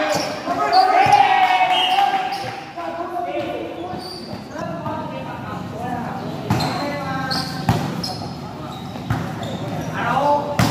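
Volleyball being played: players and onlookers shouting and calling, loudest just after an attack at the net, with several sharp thumps of the ball being hit or striking the court in the second half.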